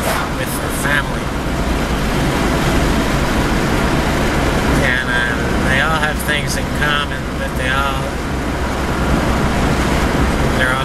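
Steady road and engine noise from inside a moving vehicle's cabin. A man's voice talks over it briefly near the start and again from about five to eight seconds in.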